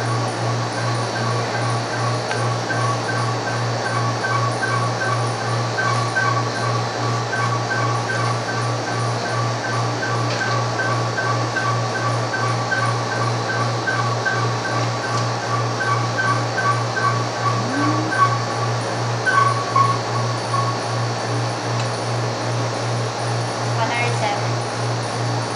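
Background music playing over a steady low hum. A regular high pulsing pattern runs through it and stops about eighteen seconds in.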